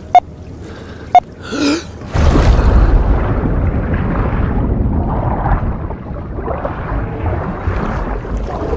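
A quick gasped breath, then a plunge into water about two seconds in, followed by muffled underwater rushing and bubbling. Two short ticks come before the breath.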